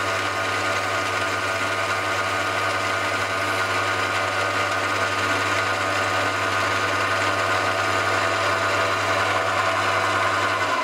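Small hobby lathe running at a steady speed, with a steady low hum under a higher whine, while its turning tool cuts a white Delrin plastic workpiece.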